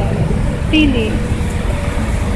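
Outdoor noise picked up by a handheld phone: a steady low rumble on the microphone, with indistinct voices of people talking nearby.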